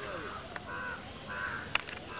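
A crow cawing twice, two short harsh calls in quick succession, with a single click near the end.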